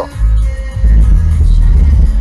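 Music with heavy bass played loud through the Audi A5's upgraded aftermarket sound system, the low end from a Pioneer TS-WX70DA compact active subwoofer, heard inside the car's cabin. The bass dips for a moment at the very start, then comes back strong.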